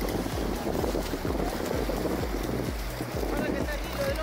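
Wind buffeting a phone's microphone in an irregular low rumble, over the wash of surf on the beach, with faint voices near the end.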